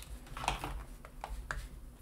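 A few faint metallic clicks and light handling noise from a stainless steel KF vacuum clamp as its wing nut is screwed tight.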